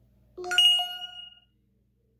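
A single bright bell-like ding about half a second in, ringing for about a second as it fades.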